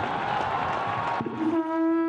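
Outro sound effect: a rushing noise, then, about three-quarters of the way in, a single steady held tone with overtones, like a horn note.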